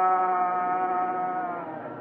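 Worship singing in an old, narrow-band recording: voices hold one long sung note that fades out about a second and a half in.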